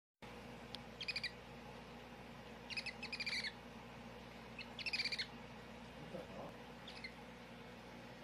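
Rapid high-pitched chirps in three short quick runs, about a second, three seconds and five seconds in, with a fainter one near the end, over a faint steady hum.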